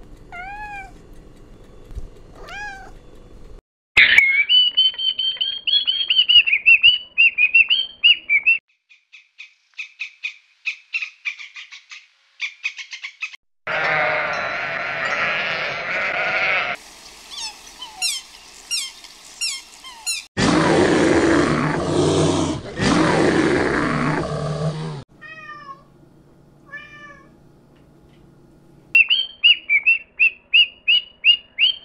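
A run of different animal calls, one after another with abrupt cuts. It opens with a cat's short rising meows, a loud sheep bleat stops about 17 s in, and rapid high chirping calls come near the end.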